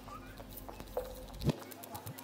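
Sparse sharp knocks and clicks, each leaving a short ringing tone, the two strongest about a second in and near the end, over a faint steady hum.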